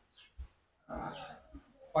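A man sipping hot coffee from a cup with a rough, noisy slurp about a second in, after a few small clicks.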